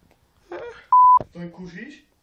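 A single short electronic beep, one steady high tone lasting about a quarter second and much louder than the voice around it, cutting in between a man's words like a censor bleep over a word.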